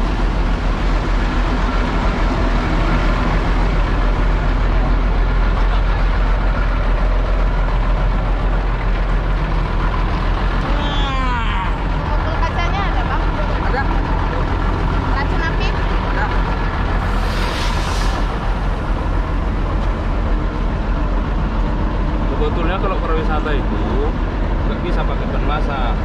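A bus engine idling steadily close by, with people talking over it. A short hiss of air comes about seventeen seconds in.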